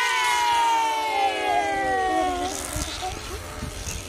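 Released rocket balloons squealing as the air rushes out of them: a drawn-out whine whose pitch falls slowly and which fades out about two and a half seconds in.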